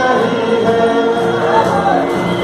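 A man singing a Hindi song into a microphone, amplified through a PA. He holds long, drawn-out notes that bend in pitch.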